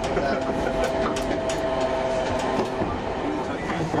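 Randen streetcar-style electric tram running along the track: steady motor whine over a running rumble, with a few clicks from the wheels over rail joints.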